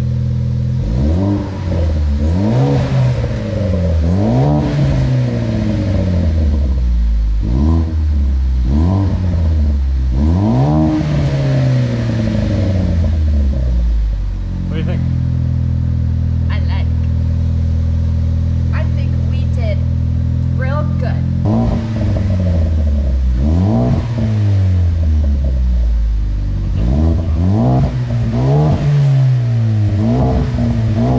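Ford Focus ST 2.0 L turbocharged four-cylinder breathing through a new MBRP cat-back exhaust with dual tips, revved in repeated quick blips. It settles to a steady idle for about seven seconds in the middle, then is revved again several times.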